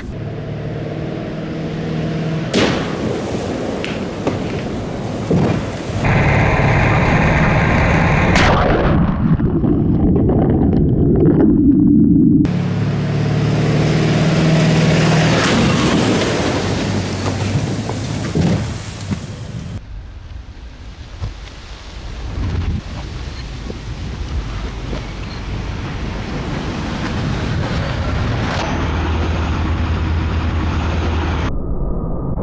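Ford F-350's 7.3 Power Stroke turbo-diesel V8 pulling hard under acceleration, heard first from inside the cab and then from outside as the truck drives past. The engine note climbs with the revs in the middle of the stretch, and the sound changes abruptly several times where the shots are cut together.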